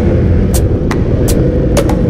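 Motorcycle running steadily on the road, a continuous low rumble, with the regular drum beat of background music over it, about two and a half strikes a second.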